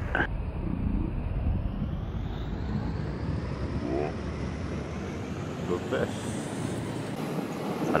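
Honda ADV 160 scooter's single-cylinder engine running at low speed in slow traffic, heard as a steady low rumble with road noise.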